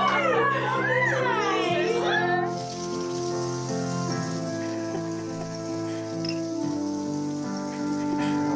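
Water running steadily from a kitchen tap into a glass from about two and a half seconds in, over background music with held chords. Voices are heard in the first two seconds.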